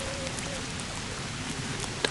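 Steady rush of water flowing over a reservoir dam.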